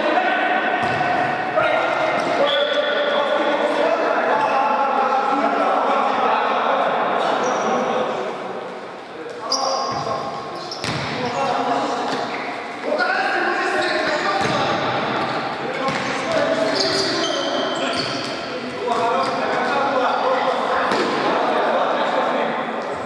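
Indoor futsal being played in a large echoing sports hall: players' voices calling out over the sharp thuds of the ball being kicked and bouncing on the hard court.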